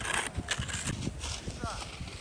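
Irregular crunching and scraping on snow with uneven low knocks, and a short high-pitched voice near the end.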